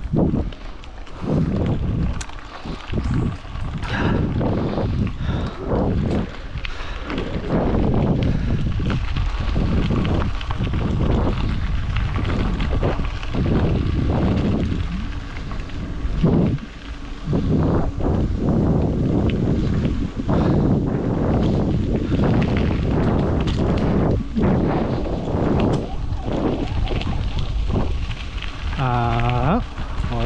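Wind buffeting the microphone in irregular, low gusts. A short voice-like sound comes near the end.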